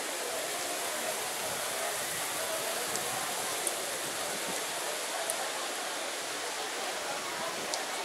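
Steady splashing of a public fountain's water jets, mixed with the chatter of a crowd of passers-by, with a few light clicks.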